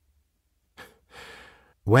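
Narrator's breath between sentences: a short mouth click, then a soft in-breath of about half a second before he speaks again.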